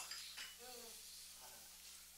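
Near silence: faint room tone, with a distant voice murmuring briefly about half a second in.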